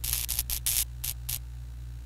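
Neon-sign sound effect: a steady low electrical hum, broken by several short bursts of crackling static as the tubes flicker on, clustered in the first second and a half, then the hum alone.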